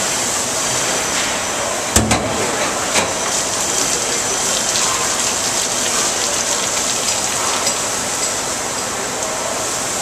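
Steady rushing hiss of liquid spraying and splashing in a milk tanker's stainless steel hose cabinet. A sharp metal clank about two seconds in and a lighter knock a second later come from hose fittings being handled.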